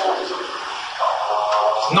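Classroom speech: a voice talking with a pause about a third of a second in, over a steady hiss of room noise.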